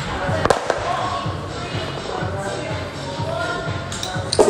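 Background music with a steady beat, over which rubber bumper plates knock as they are pulled off a barbell and set on the floor, the sharpest knocks about half a second in.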